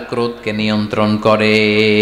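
A man's voice in a chanted, sung delivery, its pitch moving from syllable to syllable and then settling on one long held note near the end.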